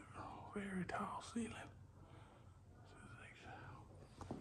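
Faint, soft voice, whispered or murmured, with a few short phrases in the first half and a little more near the end; no words can be made out.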